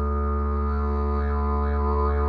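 Didgeridoo playing a steady low drone, its overtones shaped by the mouth into rising-and-falling sweeps that begin about halfway through and pulse about twice a second.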